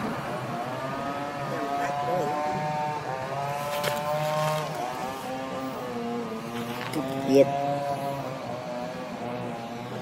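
A motor engine running at a fairly steady drone whose pitch wavers slowly, with a short sharp sound standing out about seven seconds in.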